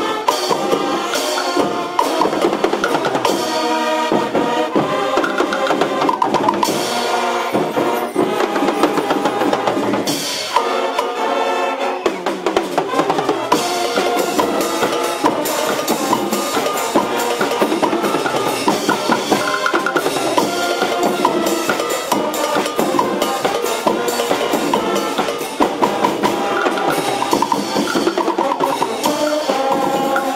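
Brazilian fanfarra marching band playing live: a brass melody over bass drums and other marching percussion.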